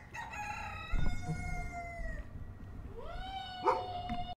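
A rooster crowing twice, each crow one long drawn-out call. The first tails off slightly in pitch, and the second starts about three seconds in. There is a low thump about a second in.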